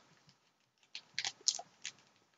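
A few short, soft crinkles from a small paper-and-plastic package being handled and opened by hand, coming in the second half.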